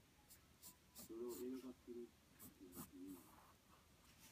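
A fine drawing tip scratching on paper in a series of short, quick strokes while an illustration is sketched, faint under a quiet voice.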